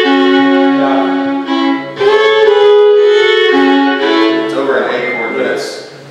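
Solo fiddle playing two short phrases of long bowed notes, the music fading out about five seconds in.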